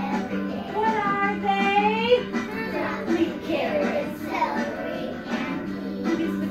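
A group of young children singing together along to recorded backing music.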